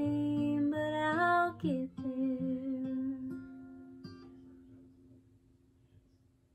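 A woman sings a held closing note over a strummed acoustic guitar. About two seconds in, the voice stops and the song's final guitar chord rings on, fading away to near silence.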